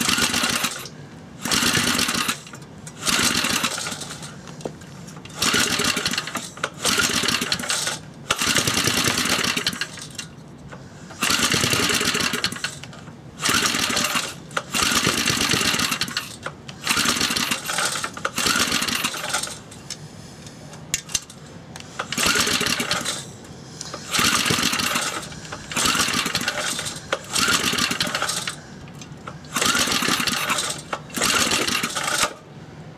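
Briggs & Stratton 2 hp single-cylinder engine cranked by hand on its recoil pull-starter, over a dozen hard pulls one every second or two, each a short burst of rope and spinning engine, without it catching and running. The engine is far down on compression (about 30 psi) from a badly scored cylinder, which the owner takes as a sign that the JB Weld repair has not worked.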